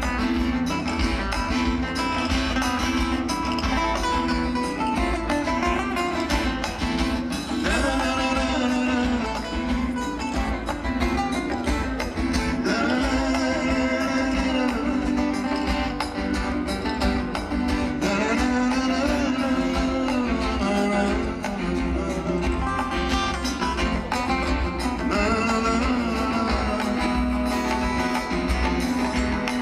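Live band playing through a concert PA: strummed acoustic guitars with bass and drums, and a man singing in German.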